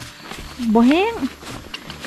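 Speech only: one short spoken phrase about a second in, its pitch rising and then falling, amid quieter background sound.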